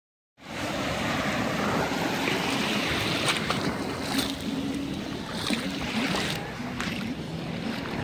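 Shallow surf washing over sand at the water's edge, a steady rush of water with wind buffeting the microphone.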